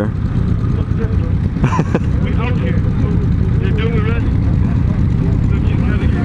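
Several motorcycle engines idling together, Harley-Davidson cruisers among them, as a steady low rumble. A rider laughs briefly about two seconds in.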